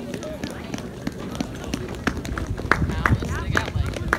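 Indistinct talk of people close by, with no band music playing. From about halfway in, scattered knocks and thuds come more often and louder.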